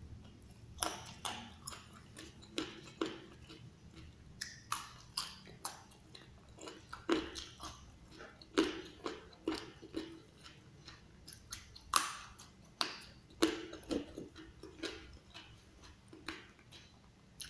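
Close-up chewing of raw leunca (black nightshade) berries: a run of irregular, sharp crunches, about two a second.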